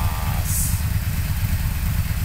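Yamaha V-Max 1200's 1198 cc DOHC V-four engine idling with a steady low rumble.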